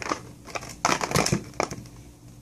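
Clear plastic packaging tray crackling and crinkling as it is handled while a small plastic doll is pulled free of it: a few short crackles, the loudest just under a second in and another at about one and a half seconds.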